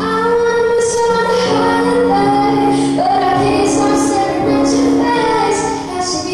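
A young girl singing solo into a microphone with musical accompaniment, holding long sustained notes.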